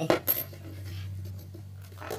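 Two sharp metallic clinks near the start as small metal-cased DC gear motors knock together in the hand, followed by a faint steady low hum.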